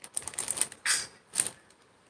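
Clear plastic jewellery pouches crinkling as they are handled: a handful of short, crackly rustles over the first second and a half.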